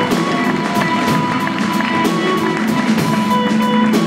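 A live band plays upbeat music: sustained pitched instrument notes over a quick, steady drum beat.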